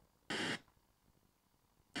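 A Sony XDR-S61D radio's speaker giving one brief burst of FM static, about a third of a second long, a little way in, and otherwise silent: the radio mutes its audio while it steps through each manual FM tuning step.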